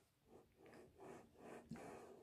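Near silence, with only faint soft rustles of cotton fabric being smoothed by hand and pressed under an iron, a little more audible in the second half.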